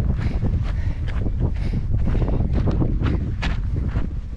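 Wind buffeting the microphone of a hand-held action camera as a walker moves along a dirt track, with a low rumble throughout. Footsteps on the track come through as scuffs about two or three times a second.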